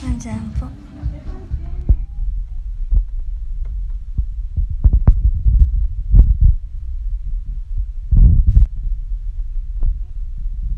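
Low rumble and irregular thumps of a phone's microphone being handled and brushed against clothing, with wind buffeting, as the phone is carried outdoors.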